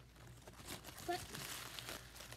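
Crinkly food wrapper being crumpled and handled by hand, a run of quick crackles.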